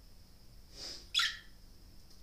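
A pet parrot gives one short chirp that falls in pitch, about a second in, just after a soft breathy sound.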